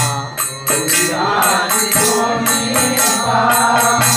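A man's voice singing a Bengali devotional kirtan, holding and bending long notes. Percussion strikes in a steady rhythm of about three beats a second under the voice.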